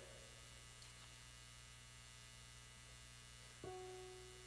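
Near silence with a steady electrical mains hum. About three and a half seconds in, a single held note on an electronic keyboard begins and slowly fades.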